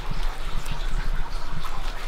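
A steady low background rumble with a few faint small ticks over it.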